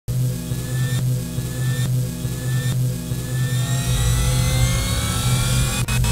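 Cinematic intro sound design: a steady low drone under slowly rising tones, with soft pulses about once a second, building with a deeper rumble about four seconds in.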